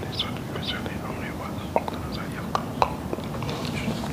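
Quiet whispered speech, a voice murmuring under the breath, with a few sharp faint clicks about halfway through over a steady low background rumble.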